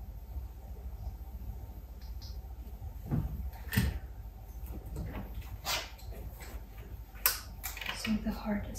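Handling of a stethoscope and clipboard: a few soft rustles and sharp clicks over a low steady hum, the sharpest click near the end.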